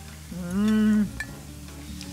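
A person's short hummed "mmm", one held note at a steady pitch lasting under a second, with a faint click of a utensil after it.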